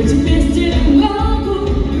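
A woman singing a pop song into a microphone over a backing track with a steady beat, amplified through stage speakers.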